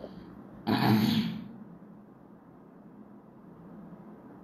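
A woman clears her throat once, a short burst about a second in that fades within half a second, then only low room tone.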